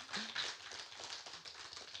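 Audience applauding, a dense patter of claps that thins out near the end, with a brief laugh near the start.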